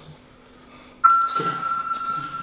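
Quiet for about a second, then a steady high-pitched tone starts suddenly and holds, with a brief hiss as it begins.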